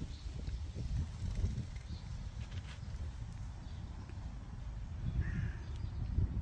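Uneven low rumble of wind buffeting the microphone outdoors, with one short bird call about five seconds in.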